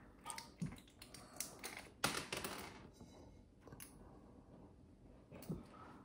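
Eating: faint, scattered clicks and short scrapes of a spoon against a plate, with chewing.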